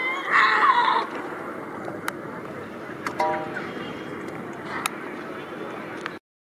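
A javelin thrower's short, loud shout as she releases the javelin, over a steady murmur of an outdoor crowd.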